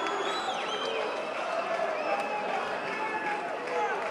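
Football stadium crowd at full time: many voices shouting and chattering at a steady level, with short high gliding whistles sounding over the hubbub now and then.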